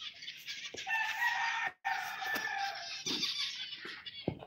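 Many small aviary finches chirping and chattering together, with a rooster crowing over them for about a second and a half, starting about a second in.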